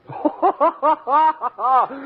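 A woman laughs in a quick run of short, pitched 'ha' syllables, about six a second, each rising and falling. The recording is a dull-topped 1940s radio broadcast.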